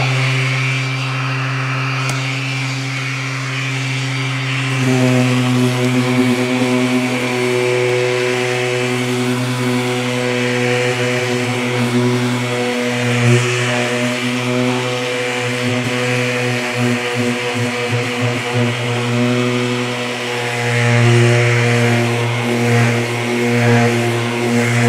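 Electric random orbital sander running steadily on body filler with a 220-grit disc, a continuous hum whose tone shifts about five seconds in as it works the panel.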